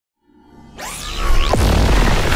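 Synthesised whoosh sound effect from an animated intro, swelling out of silence within the first second, with sweeping pitch glides that fall and rise over a deep rumble.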